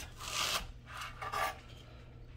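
Kitchen knife drawn through a red onion onto a wooden cutting board, halving it: a rasping cut near the start, then a second, fainter scrape about a second later.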